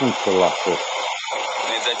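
A man speaks briefly, then a steady hiss carries on for the rest of the moment, heard through a video-call line.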